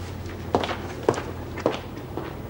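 Footsteps: three sharp steps about half a second apart, over a low steady hum.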